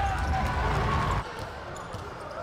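Basketball arena ambience: crowd and court noise with a low rumble that drops off suddenly about a second in, at an edit.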